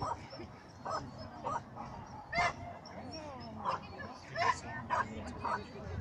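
A dog barking repeatedly: about eight short, sharp barks at uneven intervals, the loudest a little before halfway.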